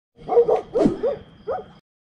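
Dogs barking and yipping, about three short bursts of sharp calls that drop in pitch, cut off suddenly near the end.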